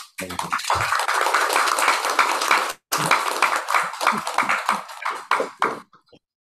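A group of people applauding, the claps thinning out into separate claps toward the end before stopping, with a brief dropout about halfway through.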